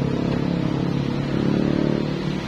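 A steady low hum made of several held pitched tones, running evenly.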